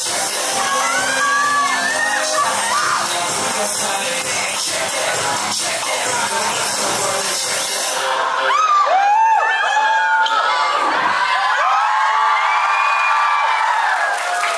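A K-pop dance track plays loudly over a speaker system and cuts off about eight seconds in. A crowd of young people then cheers and screams with many high-pitched voices, loudest right after the music stops.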